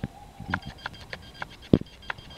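A run of light, irregular clicks and taps, with one much louder knock near the end.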